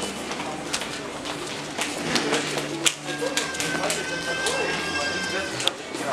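Airport terminal ambience: background music with steady chords, indistinct voices and scattered footsteps and clicks, with a held high tone through the second half.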